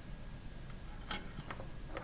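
A few faint light clicks from a pump's diaphragm rod and diaphragm assembly being clamped and handled in a soft-jawed vise, three in the second half, over a low steady room hum.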